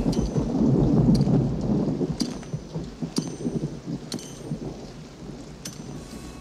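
Rolling thunder over steady rain, loudest about a second in and slowly dying away, with a few sharp ticks scattered through.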